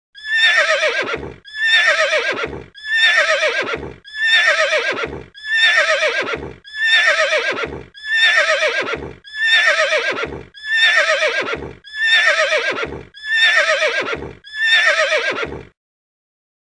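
A horse neighing: the same whinny repeated eleven times, about one and a third seconds apart. Each call quavers and drops in pitch toward its end.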